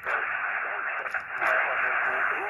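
Xiegu X6100 HF transceiver's speaker playing 40-metre lower-sideband reception: a steady hiss of band noise, with a faint voice from a distant station coming through about halfway. The signal is picked up on a 66 ft end-fed wire antenna strung indoors.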